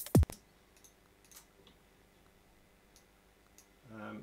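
A drum and bass track playing back from the computer, with kick drums that drop in pitch, stops abruptly about a third of a second in. After that there are only a few faint, scattered clicks, as of a mouse or keys being worked at the desk.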